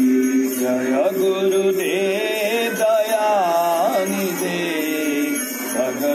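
A devotional bhajan being sung: a held note for about the first second, then a melodic vocal line with wavering glides.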